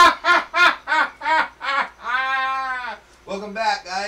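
A person's drawn-out laugh: a run of rhythmic 'ha' pulses about three a second that slow down, then one long held 'haaa' about two seconds in, followed by a short burst of voice near the end.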